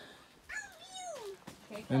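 A young child's short, high wordless call, its pitch falling, about half a second in.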